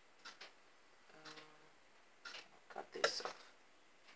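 Handling of a string-tied bundle of dyed paper: a few short, sharp clicks and crackles, with the loudest cluster about three seconds in.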